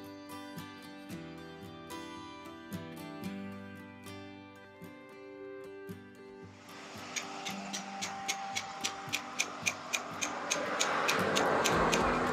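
Acoustic guitar music, giving way about halfway through to rapid, even tapping, about four taps a second, of a small hammer on a stone gravestone base.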